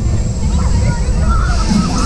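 Wind buffeting the microphone of a rider on a swinging Höpler Schunkler fairground ride, a loud, ragged rumble, with riders' voices faint underneath.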